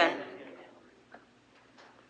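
A man's voice ends on its last word and trails away, leaving near silence with a few faint, short clicks.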